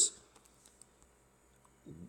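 A pause in a man's reading: near-quiet room tone with a few faint, scattered clicks, then a brief murmur of his voice just before the end as he starts to speak again.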